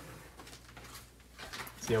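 Quiet room tone with a faint, steady low hum, then a man's voice starting near the end.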